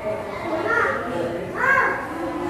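Indistinct children's voices talking and calling, with two short louder calls, one just under a second in and one near the end.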